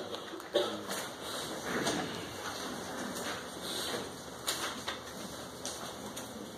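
Paper worksheets being handed out: rustling with scattered light clicks and knocks, and faint low voices in the room.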